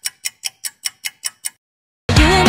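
Clock-style ticking sound effect, evenly spaced at about five ticks a second, stopping about a second and a half in: a quiz countdown marking the time to guess the song.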